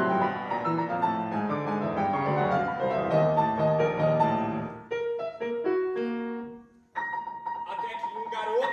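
Grand piano playing a solo passage of a twelve-tone art-song accompaniment. Dense chords thin to a few separate notes about five seconds in and die away into a brief pause just before seven seconds, after which the sound resumes with a held high note.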